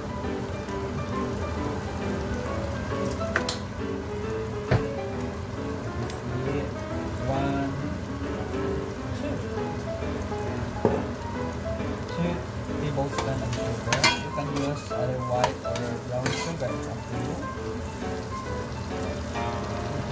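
Sliced onions, garlic, ginger, lemongrass and chilies sizzling steadily in hot oil in a stainless steel pot, with a few sharp clinks of a metal spoon against the pot.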